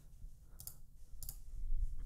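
A few light computer mouse clicks as items are picked from a menu in lighting-console software.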